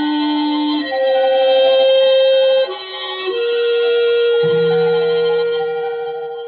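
Dramatic orchestral music bridge from a 1940s radio drama score: a slow line of held notes that shifts pitch every second or two, with a lower note joining about four and a half seconds in.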